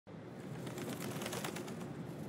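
Faint outdoor ambience with birds calling.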